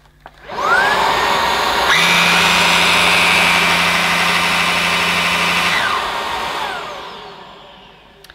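Halo Capsule cordless vacuum cleaner's brushless motor switched on, whining up to speed about half a second in. About two seconds in the power head's brush roll joins with a low steady hum. Near six seconds both switch off and the motor winds down with a falling whine; the brush head is relatively quiet and adds little to the cleaner's noise.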